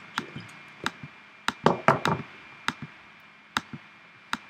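Sharp clicks of a computer's pointer button, about seven in four seconds and unevenly spaced, stepping a calendar forward month by month. The loudest pair comes about two seconds in.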